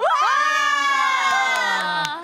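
Several young women's voices shrieking together in one long, loud cheer that starts abruptly and is held for about two seconds, sagging slightly in pitch: a team celebrating a verdict in its favour.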